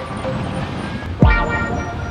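Steady rumble of vehicles driving past slowly, with a short car horn toot a little over a second in.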